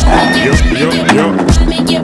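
Background music with a steady beat. For about the first second and a half the drums drop out, and a sound like a horse whinny plays inside the track as a run of falling, wavering cries before the beat comes back.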